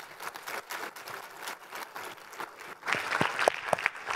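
Audience applauding at the end of a talk, a dense patter of many hands clapping that swells about three seconds in, with a few sharper knocks near the end.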